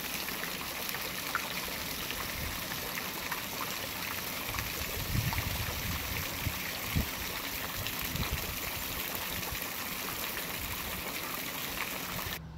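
Garden fountain splashing steadily into its pool, a continuous watery hiss, with a few low thumps about five to seven seconds in.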